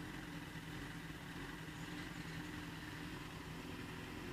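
Motorcycle engine idling steadily and fairly quietly while the bike stands still.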